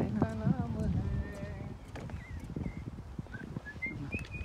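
Footsteps knocking on a wooden boardwalk, with a voice in the first second or so and short bird chirps in the second half.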